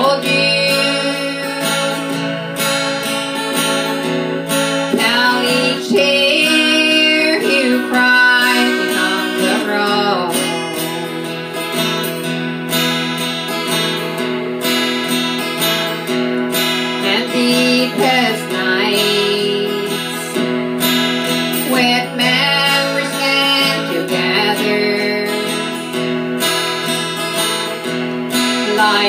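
Acoustic guitar strummed steadily, accompanying a woman singing at times.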